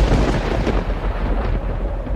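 Dramatic sound-effect sting laid over the soundtrack: a loud thunder-like rumble with a hissing swish and a heavy low end, slowly dying away.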